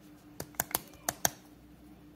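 A small plastic toy barrel clicking as it is handled and its parts snapped together: about five sharp, quick plastic clicks in the first second and a half, the last one the loudest.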